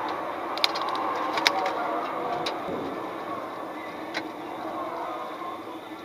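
Steady road and engine noise of a car driving on a highway, as a dashcam picks it up, easing a little toward the end. A few sharp ticks are heard in the first half.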